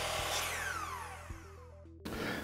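Intro sting of electronic sound design: a whoosh of noise with several tones sweeping downward, over a low hum and a short run of stepped synth notes, fading away toward the end.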